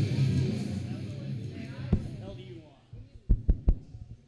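Wrestling entrance music fading out under faint crowd voices, followed near the end by three quick low thumps close together.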